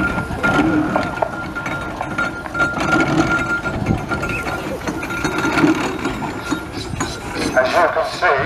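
Steam roller moving slowly, its engine and gearing running with short clanks and knocks, with people talking in the background.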